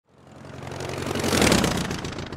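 A passing engine: a steady engine hum with rising hiss that swells to its loudest about one and a half seconds in and then starts to fade.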